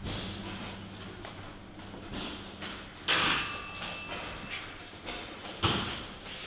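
A sudden loud metallic clang about three seconds in, ringing for about a second, and a single thump near the end, over faint knocking.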